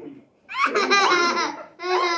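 Loud, high-pitched laughter in two bursts: the first begins about half a second in and lasts about a second, and the second starts just before the end.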